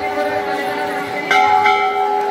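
A temple bell ringing with a long, steady tone. It is struck again about a second and a half in, with a quick second stroke just after. Crowd chatter runs underneath.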